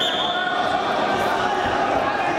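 Crowd chatter and shouting voices in a large echoing sports hall, with a low thump about one and a half seconds in.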